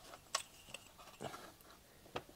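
A few faint clicks and light rustles of a plastic ruler and pencil being handled on a paper plan, with one sharper click about a third of a second in.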